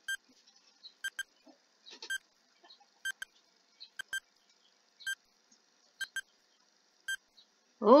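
Countdown timer sound effect: a short pitched tick-beep about once a second, marking off a ten-second countdown.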